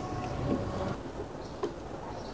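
Low steady background rumble with a few faint clicks as a screwdriver works at the fan's motor housing, fastening the new run capacitor back in place.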